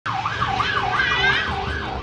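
Emergency vehicle siren wailing, its pitch sweeping up and down in quick repeated cycles, about two a second.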